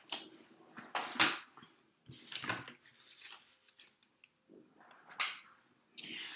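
Cardstock and a thin metal die being handled and set down on a craft mat: paper sliding and rustling, with light taps and clicks. The loudest scuffs come about a second in and again near the end.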